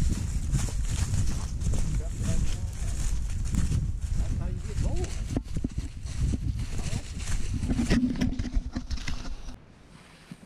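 Several people's footsteps crunching and shuffling through dry fallen leaves on a forest trail, over a heavy low rumble on the microphone. The sound cuts off abruptly near the end.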